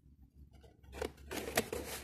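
Packaging being handled during an unboxing: a sharp click about a second in, then a short scratchy rasp near the end.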